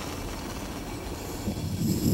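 Steady hiss and low rumble of gas from a small handheld gas torch as a match is held to its nozzle, swelling louder in the last half second.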